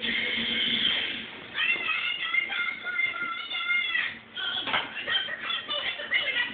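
Electronic toy music from a baby's light-up activity jumper: a short tune of thin, high notes.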